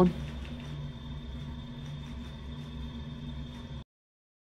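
A steady low background hum with a faint, thin high whine above it. It cuts off abruptly just before the end.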